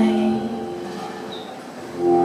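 Live accordion-and-vocal music pausing between phrases: a held sung note with accordion fades out about half a second in, leaving a short quieter lull of room noise.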